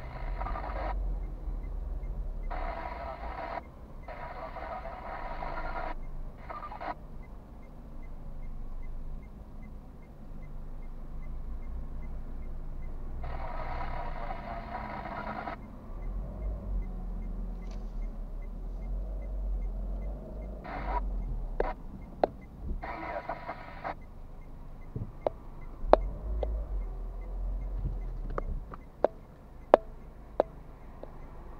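Low rumble of traffic heard from inside a car standing at a junction, with cars passing in front. Short stretches of muffled voice-like sound come and go, and a few sharp clicks sound near the end.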